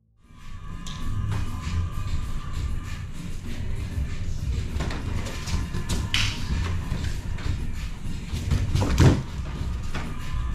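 Feet and bodies thudding and scuffing on foam gym mats as several pairs grapple, over music, with a few sharp knocks and the loudest thud near the end.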